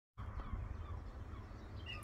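Faint birdsong over a steady low rumble, with a couple of short high chirps near the end.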